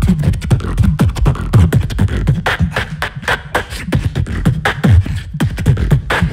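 Solo human beatboxing into a handheld microphone: a fast, dense pattern of deep bass kicks that slide down in pitch, cut with sharp snare and hi-hat clicks made by mouth.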